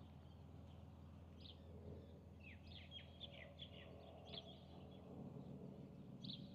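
Faint birds chirping against near silence: scattered short chirps, with a quick run of descending chirps in the middle, over a low steady hum.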